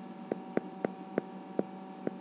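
Stylus tapping on an iPad screen while handwriting, a sharp tick about three times a second as the letter strokes go down, over a steady electrical hum.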